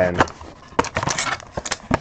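Trading cards and a foil pack wrapper being handled: a quick run of small clicks and crinkles.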